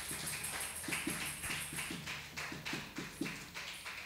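Hand clapping from a small church congregation: a quick, fairly even run of claps that thins out toward the end.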